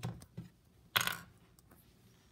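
Plastic Rainbow Loom clicking and clattering against a tabletop as it is handled and turned, with a few light clicks and one louder clatter about a second in.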